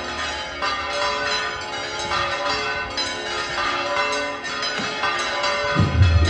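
Church bells ringing, many overlapping strokes with long ringing tones. A heavy low drum beat comes in near the end.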